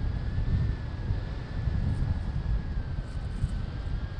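Airflow buffeting the camera microphone on a tandem paraglider in flight: a steady, gusty low rumble, with a faint steady high tone running under it.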